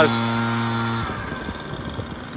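Lawn mower engine humming steadily. About a second in, the steady hum cuts off suddenly, leaving a fainter, uneven rumble.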